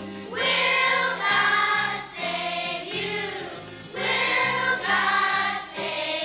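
Children's choir singing a song together over instrumental accompaniment with a steady bass line, in phrases of about a second each.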